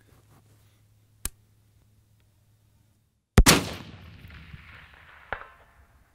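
A single rifle shot from a Barrett REC10 AR-10 precision rifle, fired about three and a half seconds in, with a long echo rolling away after it. A short, sharp click comes about a second before.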